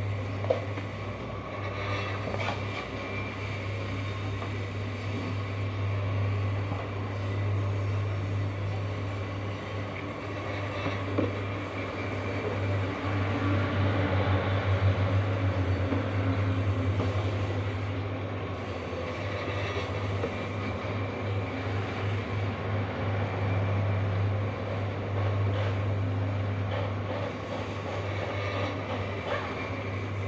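Steady low machine hum that pulses slightly, with a few light knocks, about half a second in and again near the middle.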